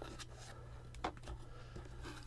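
Faint rubbing of cards against a cardboard box, with a few soft ticks, as stacks of cards are slid out of it, over a low steady hum.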